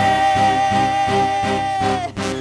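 A woman singing one long, steady held note over a live band's accompaniment with a regular beat. The note stops right at the end.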